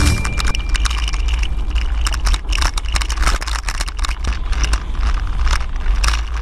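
Road noise from a moving vehicle: a low steady rumble with rapid, irregular rattling and clicking throughout.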